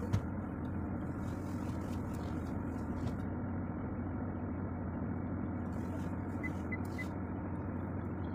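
Steady drone of a car's engine and road noise heard from inside the cabin while driving. Three faint short high beeps come about six and a half to seven seconds in.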